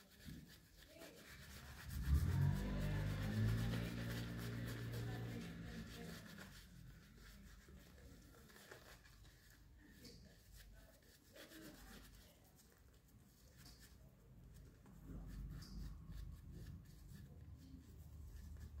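Shaving brush working soap lather over a bearded face: faint, soft scrubbing of bristles on stubble. About two seconds in, a low drone rises over it and fades away by about six seconds.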